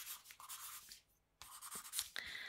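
Pen scratching on paper on a clipboard, close to the microphone, in two short spells of writing with a brief pause between.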